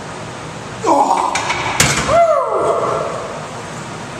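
A loaded steel barbell clanking once onto the power rack's hooks as it is racked, about two seconds in, amid loud shouting that starts just before and carries on after.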